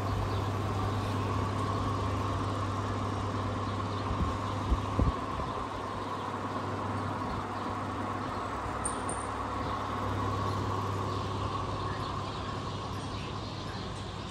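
Steady electric fan hum from a shop-doorway air curtain, with a few short knocks about four to five seconds in. The hum eases off a little near the end.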